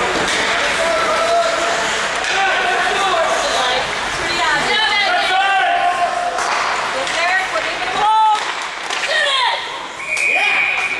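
Indistinct shouting and calling from players and spectators, echoing around an indoor ice rink during hockey play, with occasional sharp knocks of stick and puck.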